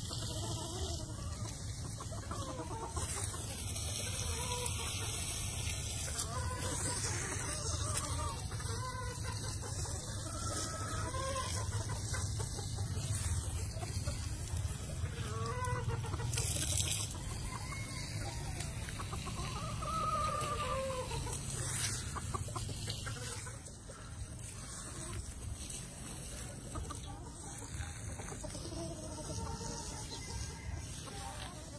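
Gamefowl chickens clucking in short calls scattered all through, over a steady low rumble.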